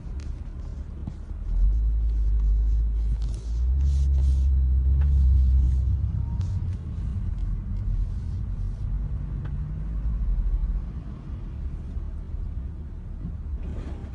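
Low rumble of a car's engine and tyres heard from inside the cabin as it creeps along in heavy traffic, swelling louder between about two and six seconds in.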